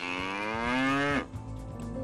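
A cow mooing once: a single call lasting just over a second, rising slightly in pitch and dropping away at the end.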